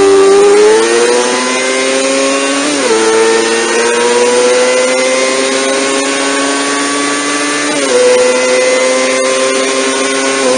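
1990 Kawasaki ZXR250's inline-four engine at full throttle, revving high, around 17,000 rpm on the tachometer, through an aftermarket Beet exhaust. The pitch climbs, then drops sharply at two quick upshifts, about three seconds in and near eight seconds in, and climbs again after each.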